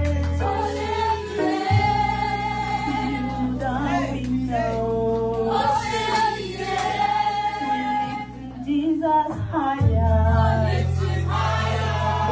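Gospel worship song: a woman singing into a microphone with other voices joining in, over held low accompaniment chords that change twice.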